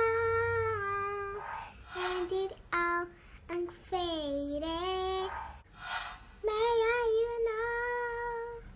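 A young girl singing unaccompanied, holding long notes: one dips in pitch and rises again about four seconds in, and a held note near the end wavers.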